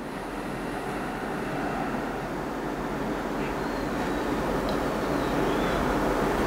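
Steady rushing background noise that slowly grows louder, with a few faint ticks.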